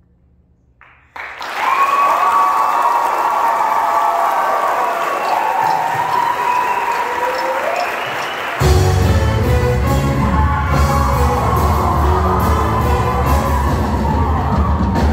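A women's show choir singing sustained chords over audience applause and cheering, entering suddenly after about a second of quiet. About eight and a half seconds in, the live band comes in with a heavy low beat under the voices.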